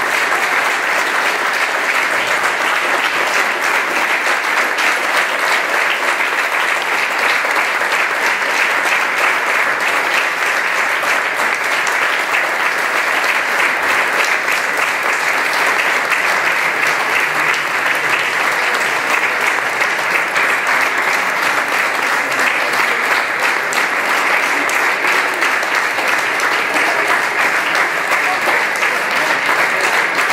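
Audience applauding: a long, steady round of clapping from a seated crowd.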